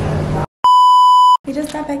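A loud, steady electronic bleep, one unbroken tone about three-quarters of a second long, dubbed in at the edit. Background music stops just before it, and a woman starts talking right after it.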